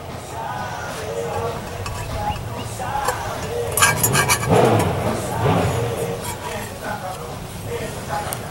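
Thin screwdriver tip scraping and clicking against the metal passages of an intake manifold as carbon buildup is picked out, with indistinct voices over it.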